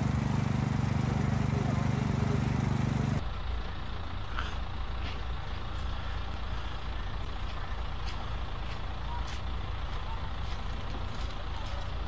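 A steady low engine hum for about the first three seconds, then an abrupt cut to quieter outdoor background noise of a crowd with faint voices and scattered light clicks.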